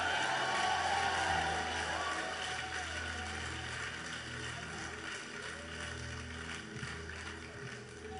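Soft background keyboard music: sustained pad chords whose low notes change every second or two, under an even hiss of room noise.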